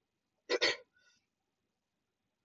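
A single short throat sound from a man about half a second in, in two quick pulses, followed by a much fainter short sound.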